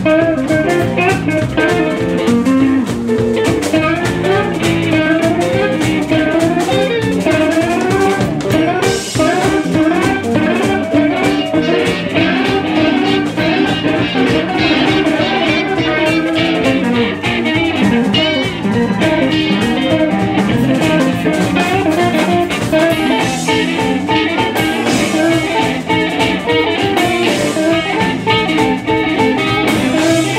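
Live blues band playing an uptempo jam: electric guitars, bass and drum kit, with a harmonica wailing over them in bending, sliding notes.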